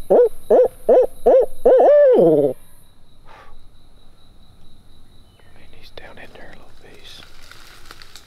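Barred owl hooting close by: a quick run of short hoots and then one longer hoot that slides down in pitch at the end, all within the first couple of seconds. Faint rustling follows later.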